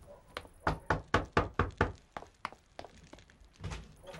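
Knocking on a wooden door: a quick run of sharp knocks, then a single duller thud near the end.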